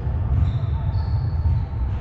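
Indoor sports hall ambience: a heavy, unsteady low rumble with faint distant voices of players.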